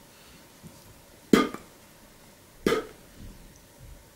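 Two short, clipped vocal sounds from a man, about a second and a half apart: a reader sounding out the first letter of a name a bit at a time.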